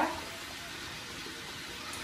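Sliced zucchini and other vegetables sizzling steadily in a frying pan in olive oil and a little water.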